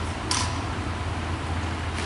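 Armed exhibition drill squad at silent drill: one sharp crack about a third of a second in, over a steady low hum in the hall.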